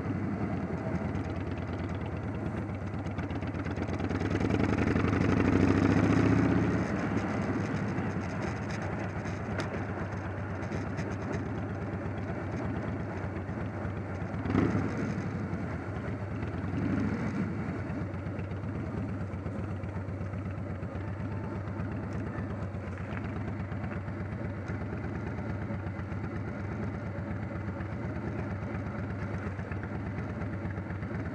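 Motorcycle engine running steadily at low speed, heard from the bike itself, with a louder swell about five seconds in and one sharp click about halfway through.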